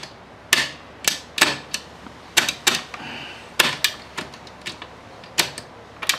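A screwdriver levering the shift drum's star wheel in an Apollo RFZ 125 pit bike's open gearbox, making about a dozen sharp, irregular metallic clicks. The star wheel won't turn far enough to engage the gears, the sign of a transmission damaged inside its casing.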